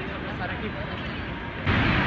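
City street ambience: a low traffic rumble with faint distant voices. About a second and a half in it cuts abruptly to a louder, steady rushing noise.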